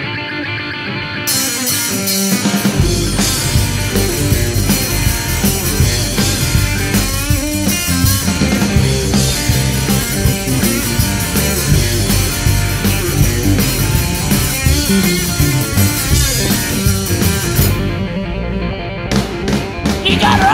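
Live rock band starting a blues number: guitar opens, cymbals join about a second in and bass and drum kit come in about three seconds in, after which the full band plays on with a brief drop of the cymbals near the end.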